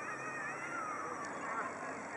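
Outdoor ambience of several people talking at a distance, too far off to make out words, with a higher wavering call over the voices in the first second.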